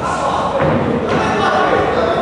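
Thuds from a kickboxing bout in the ring, about half a second and a second in, under many voices shouting in a large, echoing sports hall.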